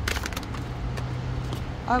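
Tarot cards being shuffled by hand, with a few quick card clicks just at the start, over a steady low hum.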